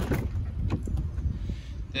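Wind rumbling on the phone's microphone, with a sharp click at the start and a few light knocks as a Jeep Compass door is opened.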